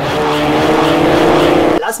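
A loud car engine sound running at high revs for nearly two seconds, then cutting off abruptly.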